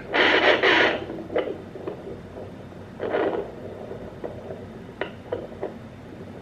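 Sonoline B handheld fetal Doppler's speaker giving scratchy static as the probe moves over gel on the abdomen, still searching without picking up a heartbeat. A loud rush of static in the first second and another about three seconds in, with scattered short clicks and scrapes between.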